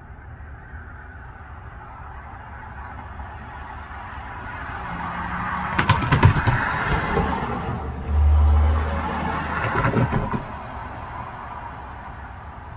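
A motor vehicle passing on a nearby road: its noise swells over a few seconds, holds with a low engine hum, then fades away.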